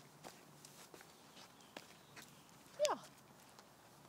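Faint footsteps on a paved path, light taps coming about twice a second.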